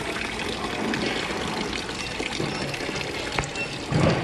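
Decorative garden fountain running, with water splashing and trickling steadily. There is one sharp click a little before the end.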